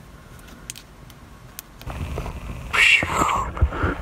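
Quiet room with a few faint clicks, then handling and rustling noise from about two seconds in as the camera is moved, with a brief louder sound about three seconds in.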